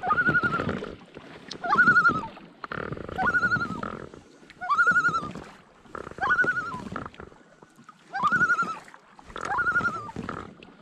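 A common loon giving its tremolo call over and over, seven times, about every second and a half. Each call sweeps up quickly and then quavers on one high note. The tremolo is the loon's alarm call, given when it is agitated. Beneath it are the swish and splash of paddle strokes in the water.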